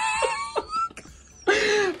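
A drawn-out vocal exclamation rising in pitch that trails off about a second in, then a burst of laughter near the end.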